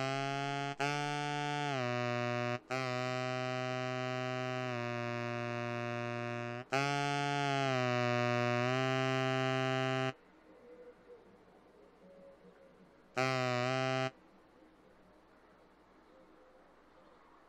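Cartoon toucan calling with a synthesised, horn-like voice: a run of long held notes that step down and up in pitch for about ten seconds, then a pause and one short note.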